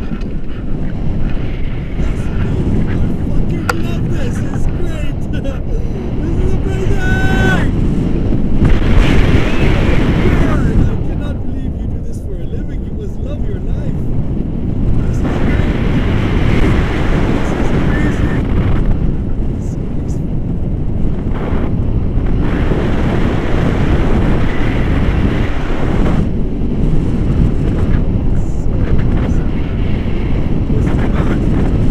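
Wind buffeting an action camera's microphone in the airflow of a tandem paraglider in flight: a loud, steady, rough rumble with brief gusty swells.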